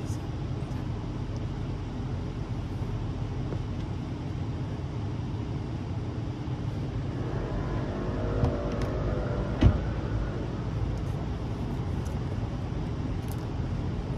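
Steady low rumble of street traffic, with a vehicle passing by from about seven to ten seconds in and a single sharp click just before the ten-second mark.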